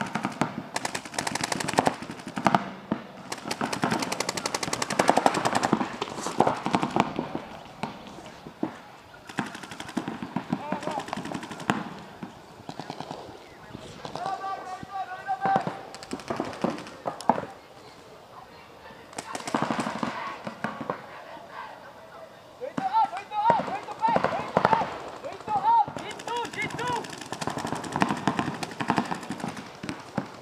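Paintball markers firing in rapid strings of shots, several bursts with short lulls between, mixed with players shouting.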